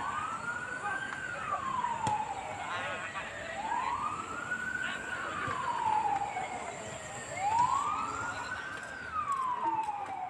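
A siren wailing, its pitch rising and falling slowly with about one cycle every four seconds, three rises in all.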